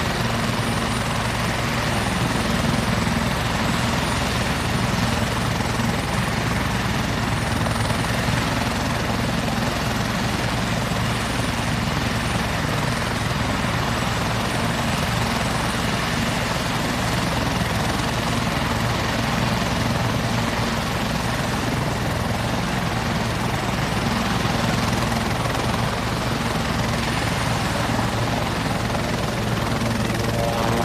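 Sikorsky S-76 helicopter running on the ground with its rotors turning: a steady rotor and engine din with a thin high turbine whine over it.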